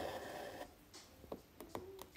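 Soft rasp of six-strand embroidery floss being drawn through cotton fabric stretched in a hoop, lasting about half a second, followed by a few faint ticks.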